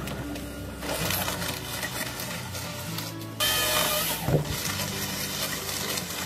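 Background music over the mechanical noise of a tracked forestry harvester working a felled log with its processing head. A louder rush of noise comes in about halfway through and lasts about a second.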